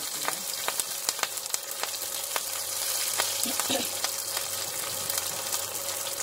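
Green chillies and chopped aromatics frying in hot oil in a pan: a steady sizzle with many sharp crackles and pops throughout.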